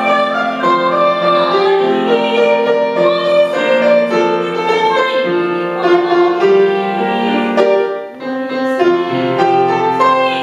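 A woman singing a Chinese song in a trained, classical style with grand piano accompaniment, holding long notes, with a short breath break a little after the middle.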